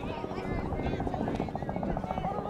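Players' voices calling across a soccer field over a rapid, even pulsing sound.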